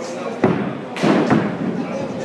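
A sharp knock about half a second in, then two duller thuds around a second later, from balls and bats striking in an indoor batting cage, over background voices in a large hall.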